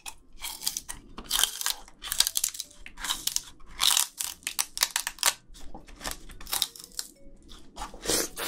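Raw sugar cane being bitten and chewed close to the microphones: a string of irregular, sharp crunches and cracks as teeth gnaw into the hard, woody stalk.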